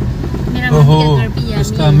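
A voice inside a moving car, over the steady low road and engine noise of the cabin.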